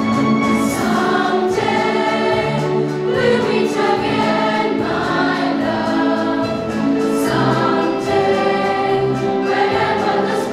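A mixed children's school choir of boys and girls singing a fusion song, with sustained sung notes that change pitch phrase by phrase.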